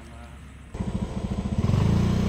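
Small motorcycle engine running, coming in suddenly a little under a second in and growing louder over the next second as the bike gets under way, then holding a steady drone.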